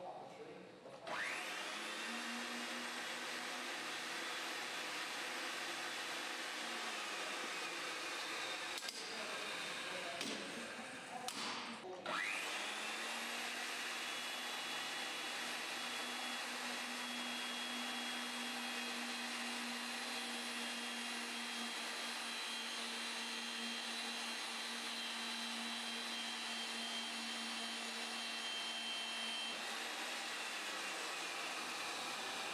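Ridgid 300 power drive's electric motor starting about a second in with a rising whine, running steadily for about five seconds, winding down, then starting again about twelve seconds in and running on with a steady hum. The first run is the reaming of half-inch steel pipe; in the second, the die head cuts the thread on the turning pipe.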